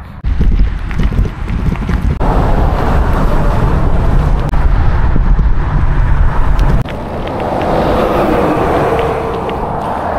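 Wind blowing over the microphone of a cyclist's action camera while riding, a heavy low rumble. About seven seconds in it drops to lighter wind and road noise beside passing traffic.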